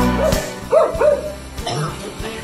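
A cocker spaniel barking four short times, the loudest just under a second in. The song on the soundtrack stops near the start.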